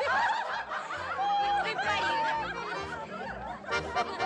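A crowd of young women laughing and giggling together, many voices at once, over dance music with a few held notes.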